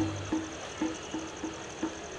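Scattered short, soft musical notes, about six in two seconds, each one dying away quickly.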